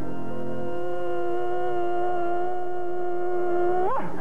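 A man holding one long, high sung "ah" note with a slight waver, over a piano chord that dies away in the first second; the note swoops up and breaks off just before the end.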